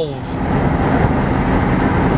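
Steady road noise of a moving car heard from inside the cabin: a low, even rumble of tyres and engine.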